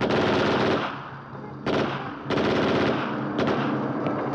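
Automatic gunfire in three bursts: a long one starting suddenly, a short one at about one and a half seconds, and another lasting about a second from just after two seconds in.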